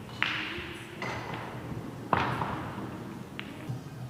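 Three sharp knocks of pool balls striking, about a second apart, the last the loudest, each ringing on in a large echoing hall.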